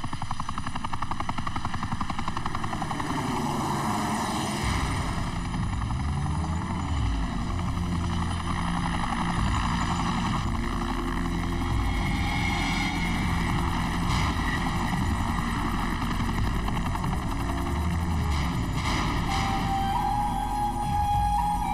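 Helicopter in flight: a steady, fast rotor chop, with a deeper low beat that comes in about four and a half seconds in.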